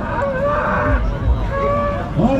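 A bull bellowing in two long, steady calls, over the murmur of a crowd.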